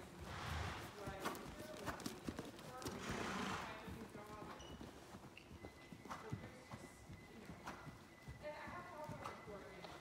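Hoofbeats of a cantering pony on soft sand arena footing, an irregular run of dull strikes. Two breathy rushes of noise, about half a second and three seconds in, are the loudest moments.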